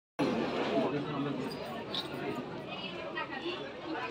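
Indistinct chatter of several people talking at once, with a brief cut to silence right at the start.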